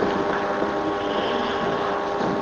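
Steady background hiss and hum with a few faint steady tones, an even noise that neither starts nor stops.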